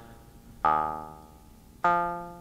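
A Mutable Instruments Plaits Eurorack module in its granular formant oscillator model plays two synth notes about a second apart. Each note starts sharply and fades, with a vowel-like "ah" tone, and the second is a little higher in pitch.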